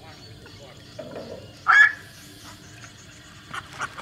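A single short, loud bird call a little under two seconds in, over faint background bird chirps, with a few light clicks shortly before the end.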